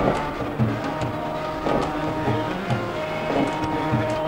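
Harmonium playing held chords over a steady hand-drum beat, an instrumental passage without singing.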